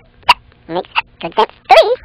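A quick run of about eight short, squeaky comic squawks, some rising or bending in pitch, such as a cartoon bird voice or a squeak toy makes.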